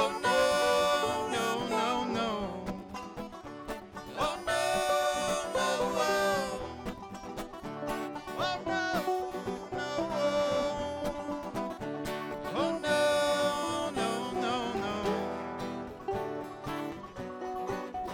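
Live acoustic bluegrass trio, with banjo, mandolin and acoustic guitar, playing a tune at a fast tempo.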